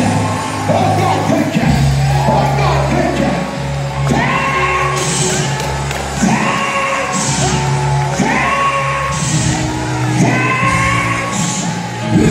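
Live gospel praise music in a church sanctuary: a lead singer on a microphone over a band with a steady bass line, with whoops from the congregation. From about four seconds in, a similar sung phrase repeats about every two seconds.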